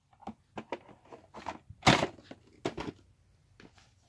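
Plastic VHS cassettes and cases being handled: a string of small clicks and knocks, the loudest about two seconds in.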